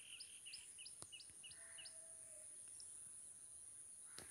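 Near silence with faint bird chirps: a short high call repeated about three times a second that stops about two seconds in, and a single click about a second in.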